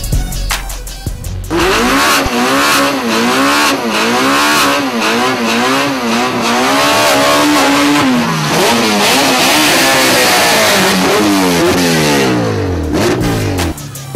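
Honda Civic street-race cars at high revs, the engine note wavering up and down as the revs are held. About eight seconds in, it breaks into several falling glides as the cars speed past and away. A hip-hop beat plays for a moment at the start and comes back near the end.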